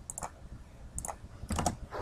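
A few faint computer keyboard keystrokes and mouse clicks, spaced out over two seconds, as a command is typed and entered.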